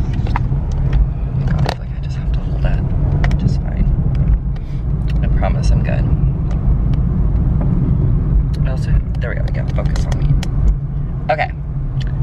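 Steady low rumble of a car driving, heard from inside the cabin, with scattered light clicks and knocks.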